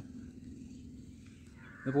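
Faint, steady outdoor background noise with a low hum, between a man's words; his voice comes back near the end.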